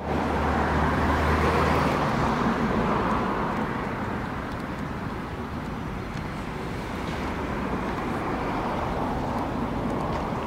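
Steady city street traffic noise, with a vehicle's low engine hum close by in the first couple of seconds before it eases off.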